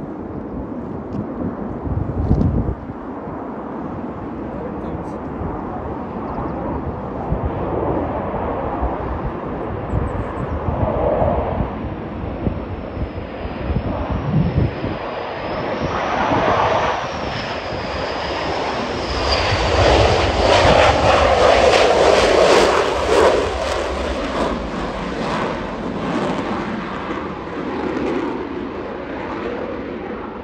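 Navy F/A-18-family twin-engine jet making a low touch-and-go pass with its gear down: a jet roar that builds, carries a high wavering whine on the approach, is loudest about two-thirds of the way through, then fades as the jet climbs away.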